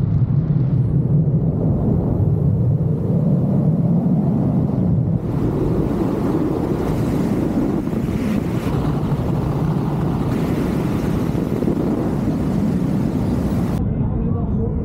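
Wind rushing over the camera microphone during a paragliding flight: a steady, loud, low rumble of air noise.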